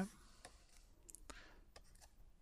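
About five faint, sharp clicks, irregularly spaced, made while a diagram is being drawn onto a lecture slide.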